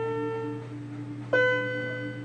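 Electronic keyboard on a piano voice playing a slow melody: a held note fades, then a new note is struck about a second and a half in, over a steady lower note.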